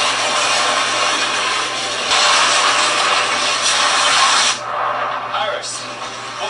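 TV episode soundtrack: a loud, steady rushing sound effect of an ice blast against fire, with score beneath. The rush drops away suddenly about four and a half seconds in.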